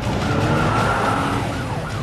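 A car pulling off hard, with a loud rush of engine and tyre noise and a steady high squeal. Near the end a siren starts, its tone sweeping down over and over, about three times a second.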